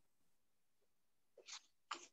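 Near silence: room tone, broken near the end by two faint, brief hissy sounds.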